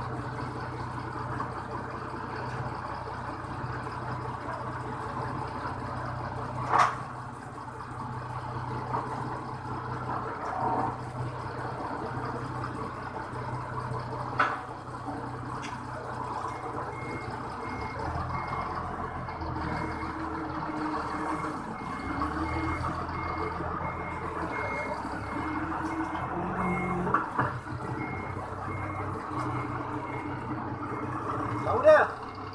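Toyota 5-ton forklift engine running at a steady idle, with two sharp knocks about a quarter and halfway through. From just past halfway its reversing alarm beeps about twice a second and the engine note rises and varies as the forklift backs away.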